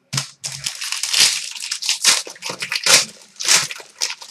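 The plastic wrapper of a Panini Prime Hockey card pack crinkling and tearing as it is ripped open by hand. It makes a quick, irregular run of crackling rustles.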